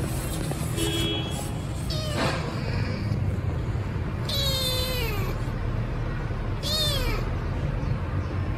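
A young tabby kitten meowing: a long call that falls in pitch about four seconds in and a shorter rising-then-falling call near the end, with a steady low rumble underneath.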